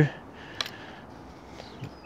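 A single sharp click about half a second in, from the joint of a two-piece kayak paddle as the blades are turned to a 90-degree feather, with a fainter tick near the end over a low background hiss.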